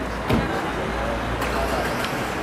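A vehicle engine running at idle, a steady low hum, with a sharp knock about a third of a second in and a lighter click about halfway through.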